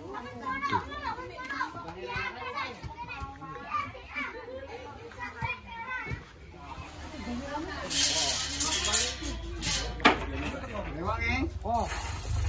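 Children's and other people's voices chattering and calling, with no clear words. About two-thirds of the way in, a rush of hiss with a low rumble comes in, and a sharp knock follows shortly after.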